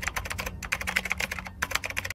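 Typing sound effect: a rapid run of keyboard key clicks, about ten a second, breaking off briefly twice, laid under text being typed out letter by letter.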